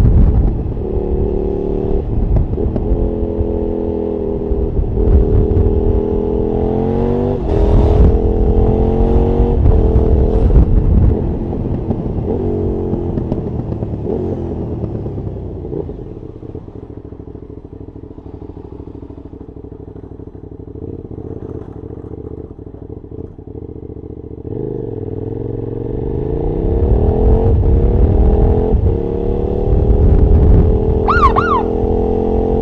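KTM Super Duke V-twin engine heard onboard as the bike pulls through the gears, its pitch climbing in steps, then settles and drops to a low idle for about eight seconds. Near the end it picks up again with a steady rising pitch as the bike accelerates away.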